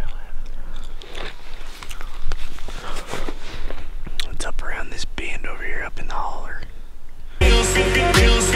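Hushed, whispered voices with scattered short clicks and rustles. About seven seconds in, electronic background music with a steady beat comes in.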